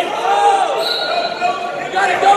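Coaches and spectators shouting at a wrestling match, their voices echoing in a gym, with dull thumps of the wrestlers on the mat.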